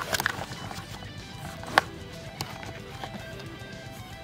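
Soft background music with a few sharp clicks and knocks of hard plastic action-figure parts being handled in a compartment organizer. The loudest click comes a little under two seconds in.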